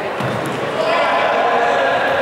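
Futsal ball thuds and bounces on a wooden gym floor, with players' shouting voices echoing in the hall. The voices grow louder about a second in.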